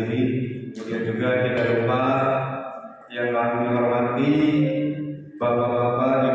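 A man's voice over a public-address system, chanting in long, drawn-out, melodic phrases with short breaks about three and five seconds in.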